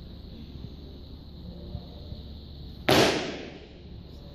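A loaded Olympic barbell being jerked overhead: one sudden sharp clatter of bar, plates and feet on the lifting platform about three seconds in, dying away over about a second.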